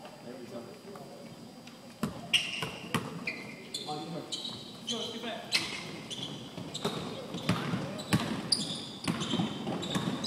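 A basketball bouncing on a hardwood gym floor and sneakers squeaking as players run, with voices echoing in the hall. The bounces and squeaks start about two seconds in.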